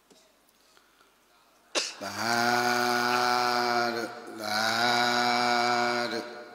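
Drawn-out chanted 'sadhu' calls in a low male voice, each held on one steady pitch for about two seconds, starting about two seconds in after near-quiet, with a short knock just before the first call.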